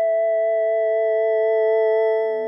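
Yamaha DX7IID FM synthesizer patch holding one steady, dry tone with a slight wavering in its overtones.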